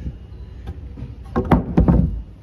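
Faint rustling and scraping, then a cluster of sharp knocks and heavy thumps about one and a half seconds in.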